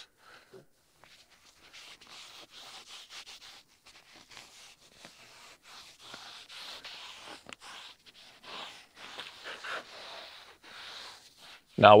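Gloved hand rubbing a ceramic trim-coat wipe over the faded, chalky black plastic door trim of a John Deere Gator UTV: soft, irregular wiping strokes.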